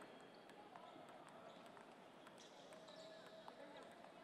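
Faint, irregular clicks of table tennis balls bouncing on tables and striking paddles, from several tables in play at once, over a low murmur of voices.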